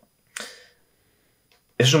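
Near silence broken by one short, soft noise about a third of a second in, sharp at the start and quickly fading; a man starts speaking near the end.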